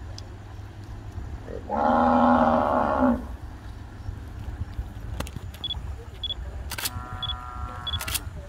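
A cow moos once, a loud call of about a second and a half that rises slightly at its end, over a steady low rumble. A short click with a brief ringing tone comes near the end.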